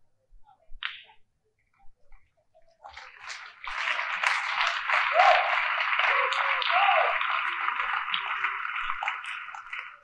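After a near-silent pause, a steady hiss-like noise begins about three seconds in and holds to the end, with faint voices under it.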